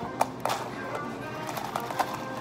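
A plastic straw jabbed into a plastic cup of iced drink, giving a few sharp clicks, loudest just after the start, over background music.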